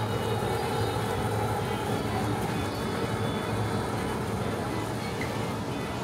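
Supermarket indoor ambience: the steady low hum of open refrigerated display cases, with faint background music.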